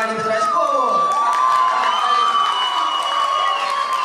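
A crowd of guests cheering, with several voices holding long high-pitched shouts over one another.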